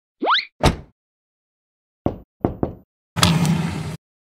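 Cartoon sound effects: a quick rising sweep in pitch and a thump, then three short knocks, then a burst of dense noise with a low hum under it that cuts off near the end.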